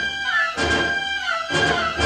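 Orchestral film-score music: a held high melody line over short, detached chords in the lower instruments, about two a second.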